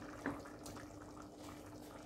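Faint bubbling and small clicks of biryani rice simmering in its liquid in an aluminium pot, with a soft knock of a wooden spatula in the pot about a quarter second in, over a faint steady hum.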